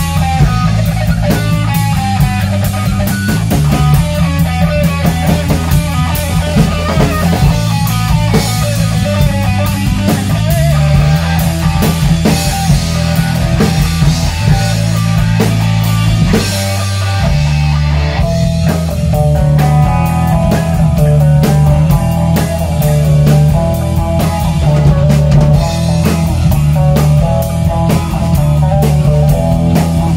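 A rock band playing live in a rehearsal room: drum kit, electric guitar and electric bass guitar. About seventeen seconds in, the bass drops out for a moment before the band carries on.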